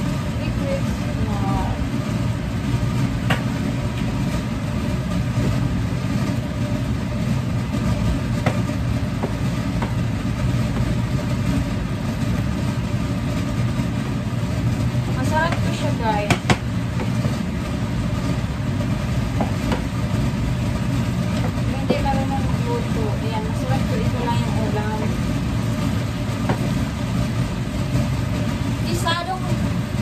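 Wooden spatula stirring and tossing green beans in a frying pan, with occasional knocks of the spatula against the pan, the sharpest about sixteen seconds in. Under it runs a steady low mechanical hum.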